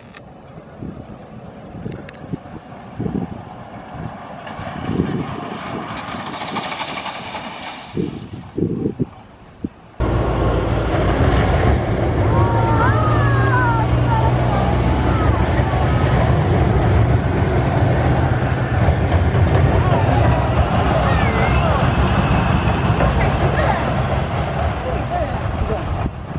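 Arrow Dynamics steel looping coaster train running on its track. First a distant rise and fall with low thumps, then, after an abrupt cut about ten seconds in, a loud steady rumble of the train close by, with a few short cries over it.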